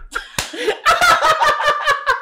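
A man laughing hard and high-pitched, his laughter breaking into a rapid run of sharp pulses that starts about half a second in.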